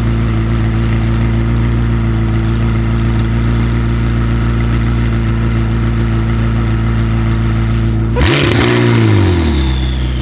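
McLaren 600LT's twin-turbo V8 with a Fi straight-through exhaust idling steadily. About eight seconds in it gives one short, sharp rev that rises and falls back to idle within about a second.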